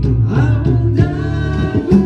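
A small band playing live: singing over electric bass, guitar and percussion.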